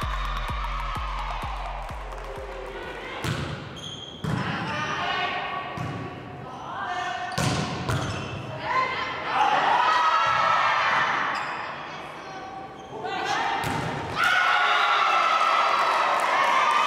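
Volleyball rally in a gymnasium: a handful of sharp hits of the ball on hands and arms, a few seconds apart, with players shouting between them. Shouts and cheering rise near the end as the point is won. Fading background music is heard at the start.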